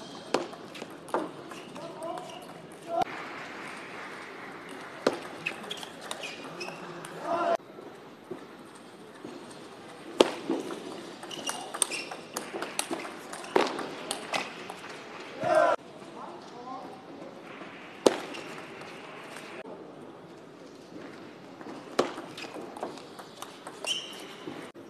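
Table tennis play: the ball gives sharp single clicks off the rackets and the table through several rallies. Short shouts and voices are heard between points.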